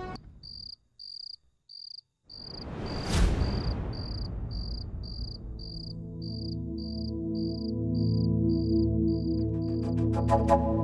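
Cricket chirping at an even pace, about two and a half chirps a second. A swelling whoosh rises and fades, peaking about three seconds in, and a low sustained music drone comes in around the six-second mark.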